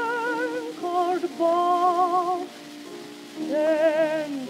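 Acoustic-era 78 rpm record of a contralto singing long held notes with vibrato over piano accompaniment, under a steady surface hiss from the disc. The voice drops out for under a second about two and a half seconds in, leaving the quieter piano, and comes back near the end.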